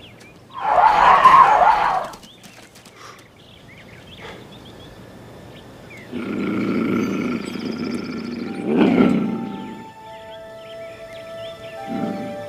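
Mountain lion snarling once, loud and short, about half a second in, then growling for about four seconds from the middle on. Film-score music comes in near the end.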